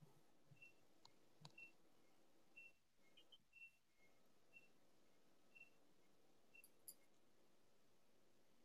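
Near silence: quiet room tone with faint, short high-pitched chirps every half second to a second and a few soft clicks.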